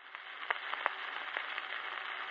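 Surface noise of a 78 rpm shellac record after the music has ended: a steady hiss with scattered sharp clicks and crackles as the stylus runs in the unrecorded groove.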